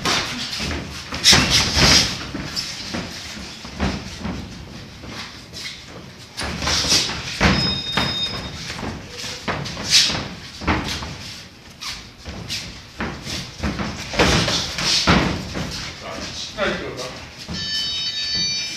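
Sparring punches from boxing gloves landing in irregular flurries of sharp thuds on gloves and headgear, mixed with shuffling footwork on the ring canvas.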